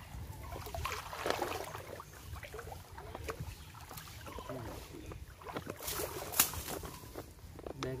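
Water splashing and sloshing as a person wades in a shallow stream and hauls a fishing net through the water, in irregular small splashes with one sharper splash about six and a half seconds in.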